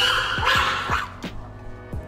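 A chimpanzee gives a quick run of short, rising, excited calls, about two a second, over background music with a steady beat. The calls stop about a second in, leaving only the music.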